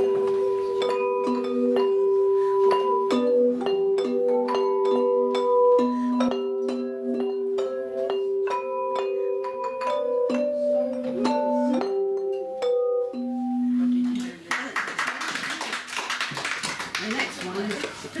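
Belleplates, hand-held tuned metal bells, ringing out a carol: struck notes, several sounding together, each held and then stopped according to the music. The tune ends about fourteen seconds in and applause follows.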